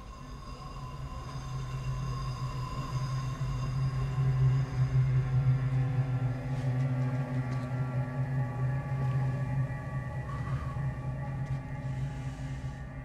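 Dark, droning horror-film score: a low sustained hum with long held higher tones, swelling to its loudest about halfway through and then easing off.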